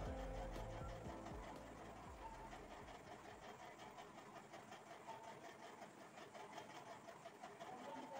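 Quiet background music fading out over the first three seconds or so, then near silence with faint ticks.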